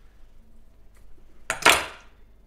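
A kitchen knife set down on a wooden chopping board: a sharp click and a short clatter about one and a half seconds in.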